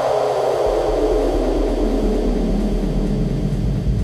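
Progressive house music: a swoosh of noise sweeping steadily downward in pitch, with a deep bass note coming in underneath about half a second in.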